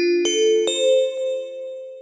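A short chime of bell-like notes climbing in pitch, struck one after another, with two more notes landing in the first second and all of them ringing on and fading away toward the end, a section-break jingle between chapters.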